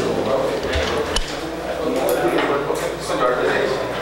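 Indistinct voices of people talking in the background, with no one clear speaker and a few faint clicks.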